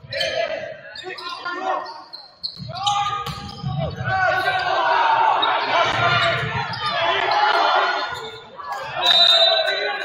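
Volleyball rally in a gymnasium: sharp ball contacts amid players' and spectators' shouts and cheers, echoing in the large hall.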